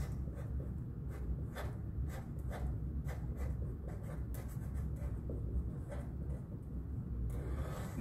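Sharpie marker writing on paper, its felt tip rubbing across the sheet in short, irregular strokes as large letters are written, over a low steady hum.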